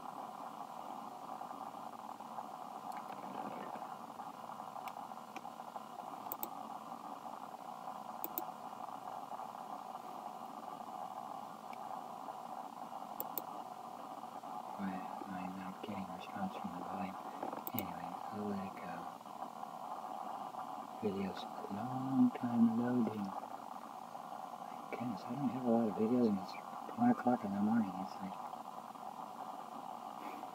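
A song playing faintly through a computer's small speaker, thin and mid-range only, with a steady held tone throughout. A voice comes in and out from about halfway through.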